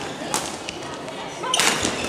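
Badminton rally in a sports hall: sharp, echoing racket strikes on a shuttlecock, with a longer burst of noise near the end.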